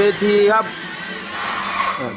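A steady rushing hiss, like a blower or spray, under a few words of speech; it cuts off abruptly at the end.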